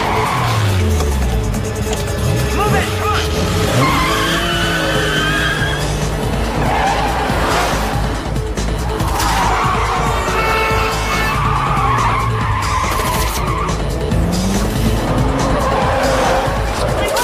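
Car chase on a film soundtrack: car engines revving and easing off, with tyres squealing, over music.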